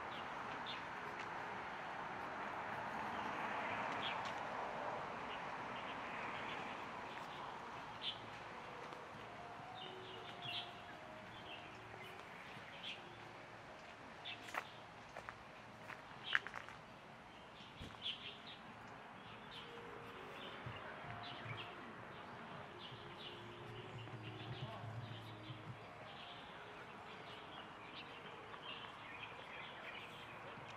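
Small birds chirping in short scattered calls from about eight seconds in, over a steady hum of distant background noise that is louder in the first few seconds. One sharper, louder note stands out about halfway through.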